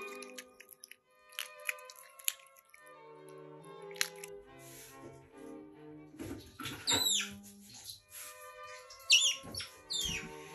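Asian small-clawed otter chirping: high squeaks that drop in pitch, one run of them a little past the middle and another short burst near the end, over background music.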